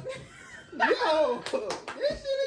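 A man laughing, with a few sharp hand slaps or claps about a second and a half in.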